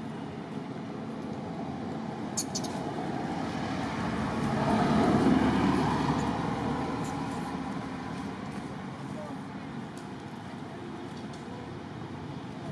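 A motor vehicle passing by: its noise builds to its loudest about five seconds in, then fades away.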